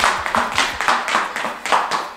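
Rapid, even clapping, about seven claps a second.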